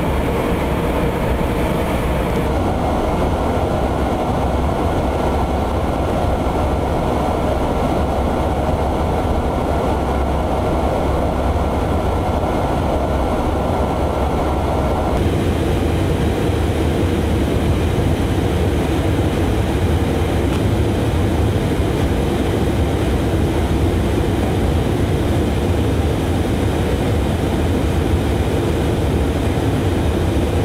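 Steady low rumble of jet engines and rushing air heard from inside a KC-135 tanker in flight. A faint steady whine rides over it from a few seconds in until about halfway, and the rumble's character changes abruptly at both of those points.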